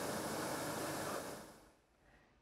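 Steady hiss-like machine noise of a fruit-processing line's conveyor, fading out to near silence about a second and a half in.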